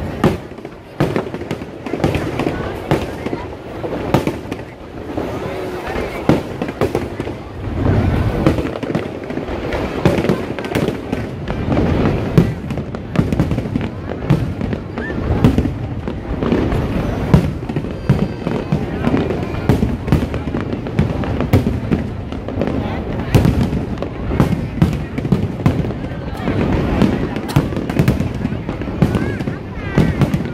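Aerial firework shells bursting in a continuous barrage, bangs and crackle following close on one another, over the voices of a large crowd.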